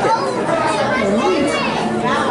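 Several people talking at once, children's voices among them: the chatter of a crowd of visitors.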